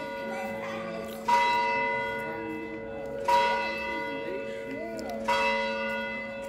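A church bell tolling: three strikes about two seconds apart, each ringing on and fading slowly.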